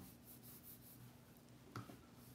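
Near silence: faint room tone with a low steady hum, and one short, faint click near the end.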